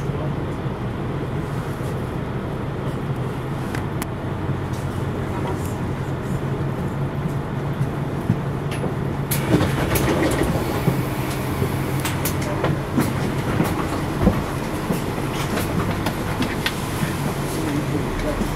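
Street noise: a steady low hum of a vehicle, joined about halfway through by louder rattling and scattered clicks as it gets busier.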